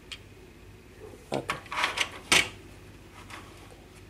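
Light clicks and knocks of a plastic zigzag-pencil magic toy being handled and set down on a wooden tabletop, the loudest knock a little past the middle.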